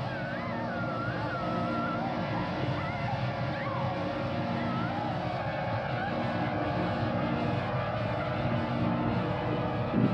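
Horror film soundtrack: a dense, steady rumbling drone with eerie wavering, gliding high tones over it, swelling slightly louder as it goes.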